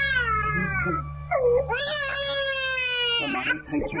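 Infant crying: two long wailing cries, the second held for about two seconds before breaking off.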